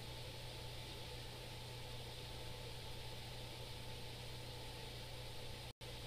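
Faint, steady room tone in a lecture room: an even hiss with a low hum underneath. It cuts out for a split second near the end.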